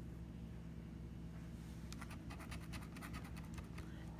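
The edge of a casino chip scratching the coating off a lottery scratch-off ticket in quick repeated strokes, starting about a second and a half in and getting busier.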